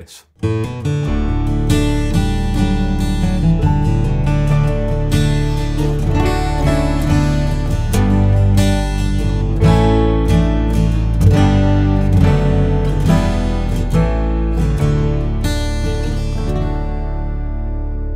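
Steel-string acoustic guitar in double drop D tuning (D-A-D-G-B-D), played as a short demonstration piece, with picked chords over a steady low drone. The last chord rings out and fades over the final few seconds.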